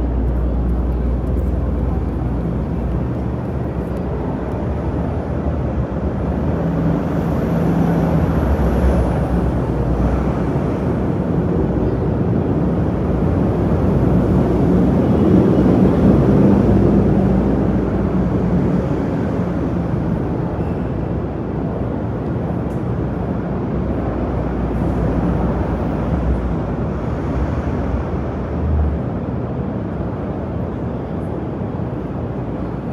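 City street ambience: a steady rumble of traffic and engine hum, swelling to its loudest about halfway through and easing off again.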